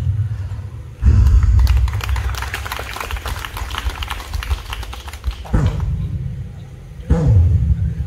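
A man's wordless, drawn-out vocal cries through a microphone and outdoor PA, falling in pitch, twice near the end. Before them come a loud thump about a second in and a few seconds of rapid clicks and taps, over a steady low rumble.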